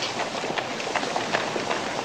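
Street ambience of a busy horse-drawn thoroughfare: a steady hubbub with scattered irregular knocks of footsteps and hoof clops.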